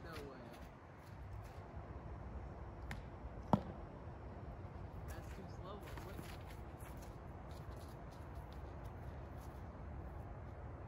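Faint distant voices over a steady low rumble, with one sharp knock about three and a half seconds in.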